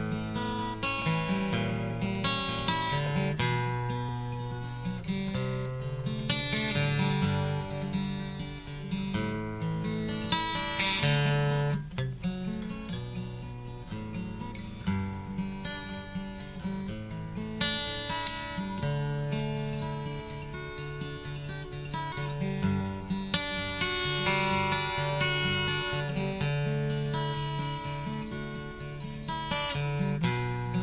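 Acoustic guitar music: a slow instrumental introduction of strummed chords and picked notes, with no singing yet.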